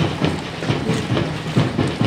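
Footsteps of a group of people walking together on a paved road: a quick, uneven patter of steps, three or four a second.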